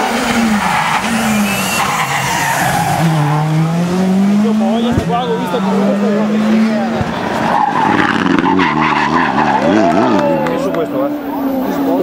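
Rally car engines at full throttle through a stage, the engine note dropping and climbing repeatedly as they shift gears, with tyre noise on the tarmac.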